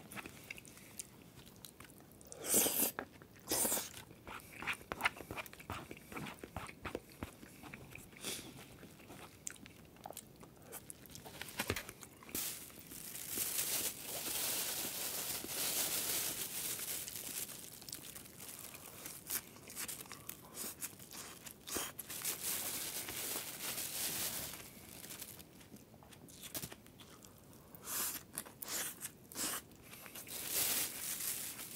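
Close-miked crunching and chewing of crisp food, with sharp bites in the first few seconds and again near the end. In the middle there is a long stretch of plastic bag crinkling.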